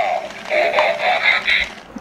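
Battery-operated light-up toy robot playing an electronic tune, which fades near the end.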